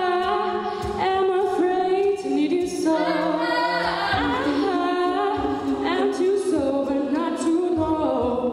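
All-female a cappella group singing: a lead soloist over sustained backing vocal harmonies, with no instruments.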